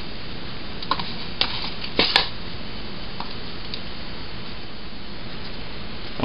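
A few short clicks and taps from handling a spoon, plastic tub and paper flour bag while flour-and-water putty is mixed by hand, the strongest just after two seconds; after that, only a steady hiss.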